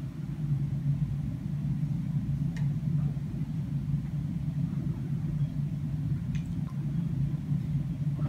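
A steady low motor hum, with a few faint light clicks over it.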